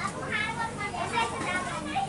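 Voices of several people talking in the background, with no words made out.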